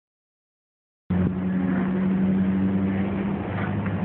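After about a second of silence, a motor vehicle engine idling steadily with a low, even hum.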